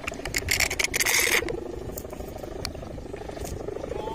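A kite's bow hummer (sendaren) droning in the wind with a pulsing, wavering hum, over a low rumble of wind on the microphone. A louder rush of noise comes about a second in.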